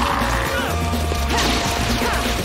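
Action film soundtrack: dramatic score music over loud smashing and crashing of glass and debris.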